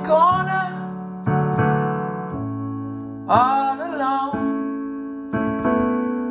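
Digital piano playing sustained chords, a new chord struck every second or so. A voice sings a short phrase near the start and again a little past halfway.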